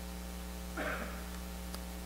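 Steady electrical mains hum, a low buzz with many overtones, from the microphone and sound system. A brief soft breath or rustle comes about a second in, and a faint click comes shortly after.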